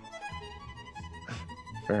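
Quiet background music with long held notes.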